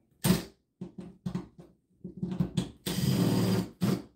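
Impact wrench run in short bursts on the barn door rail's bolts: a brief burst, several quick ones, then a longer run of nearly a second and one more brief burst.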